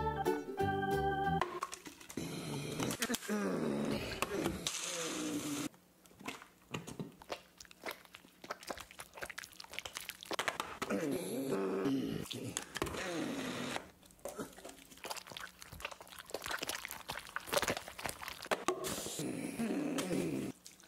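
A short keyboard music jingle for about a second and a half, then bare hands squishing and slapping raw chicken pieces into flour and breadcrumbs on a cutting board, with crunching and irregular wet smacks, mixed with short vocal noises.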